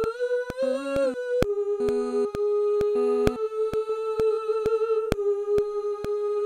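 Stacked background vocals hum one long held note in close harmony, played back from a multitrack mixing session. The pitch lifts briefly about a second in, and lower harmony notes join for short spells about two and three seconds in. A sharp click sounds about twice a second.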